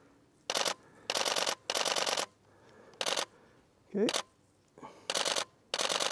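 Canon DSLR shutter firing in high-speed continuous bursts: six short runs of rapid clicks with brief gaps between them.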